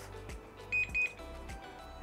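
Gyroor S300 hovershoe beeping twice, two short high beeps a quarter second apart. This is its alarm in runaway-recovery mode, set off when the skate tips over or exceeds its speed limit; the skate stays disabled until it is restarted. Background music plays underneath.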